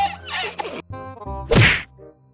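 Background music with a single loud whack about one and a half seconds in, the loudest sound here, followed by a sudden drop to near silence.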